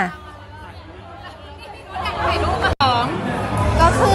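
Voices and general crowd chatter in a large hall. The chatter is faint at first, then close voices grow louder about two seconds in, with a momentary break just before the three-second mark.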